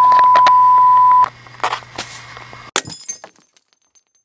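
A steady censor bleep tone blots out a word and cuts off a little over a second in. About a second and a half later comes a sharp crash of breaking glass, a screen-smash sound effect, with shards tinkling for about half a second.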